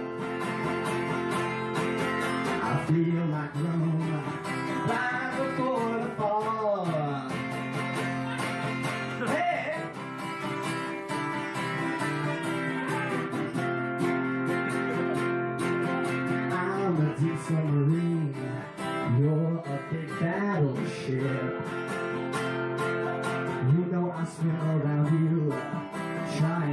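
Acoustic guitar strummed in a steady rhythm, with a man's singing voice coming in over it at times.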